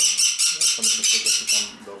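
Pyrrhura conures screeching loudly in a fast, even run of harsh calls, about five a second.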